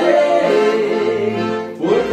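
Two piano accordions playing a tune together in steady sustained chords and melody, with a brief dip in the sound near the end.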